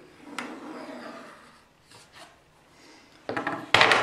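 Pencil drawing a light line along a steel combination-square blade on plywood, a faint scratching in the first second or so. Near the end, a louder knock and clatter of a metal square being handled and set down on the plywood.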